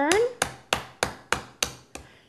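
A big chef's knife chopping into a young coconut: about seven sharp strikes in a steady rhythm of roughly three a second.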